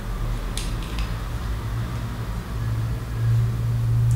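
A few faint light clicks of a metal caliper and brass rifle cartridges being handled, over a steady low hum that grows louder near the end.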